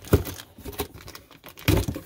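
Cardboard shipping box being handled open: flaps rustling and crinkling, with two sharp knocks of cardboard, one just after the start and one near the end.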